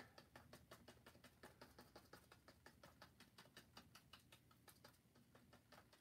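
Faint, rapid tapping of a paintbrush dabbing paint onto canvas, about six light taps a second.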